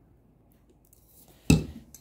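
Faint handling of the filter's plastic shrink wrap, then a single sharp knock about one and a half seconds in as the metal oil filter canister is set down on the countertop.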